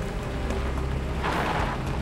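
A single distant gunshot, a short burst of noise that trails off with an echo, about a second and a quarter in, over a steady low rumble.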